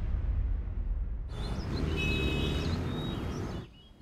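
Low, sustained drama-score music trailing off after a dramatic sting. About a second in, faint outdoor ambience with a few high chirps joins it, and both cut off just before the end.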